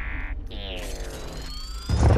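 Sci-fi film sound effects: a short electronic chirp, then a warbling tone that glides down in pitch while a thin whine rises, cut off by a loud blast right at the end.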